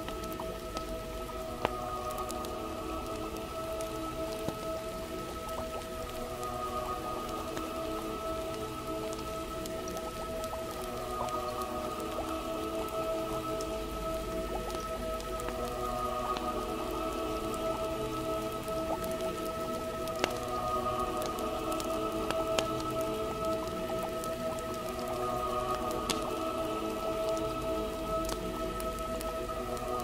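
Steady rain with the occasional snap of a crackling wood fire, under soft music of long held chords.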